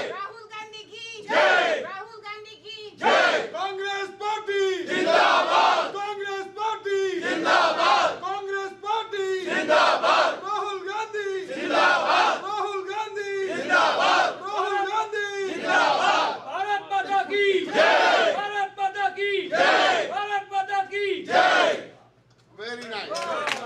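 A group of people chanting a political campaign slogan in unison, the shouted phrase repeated over and over in a steady rhythm about once a second. The chant stops abruptly just before the end.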